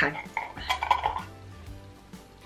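A glass jar candle being picked up and handled, with a few light clinks and scrapes in the first second or so.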